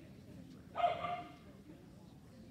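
A dog barks once, a single short bark about a second in.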